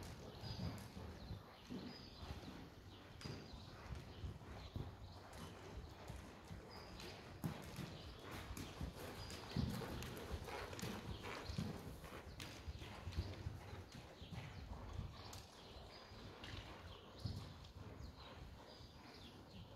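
Horse's hoofbeats at a trot on a soft indoor arena surface, growing louder near the middle as the horse passes close.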